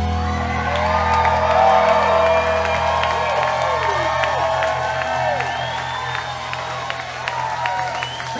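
A live band's closing chord rings out and fades after about three seconds. Over it, the crowd cheers, whoops and claps at the end of the song.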